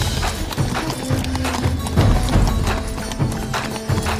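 Horse hooves clip-clopping in a steady rhythm, about two to three hoofbeats a second, over background music.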